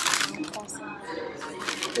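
Paper bag crinkling as it is handled: a loud rustle at the start and again near the end.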